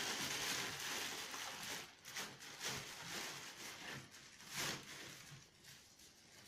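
Plastic bag rustling and crinkling as it is wrapped and tied closed by hand, steady at first, then in short separate bursts as it grows fainter.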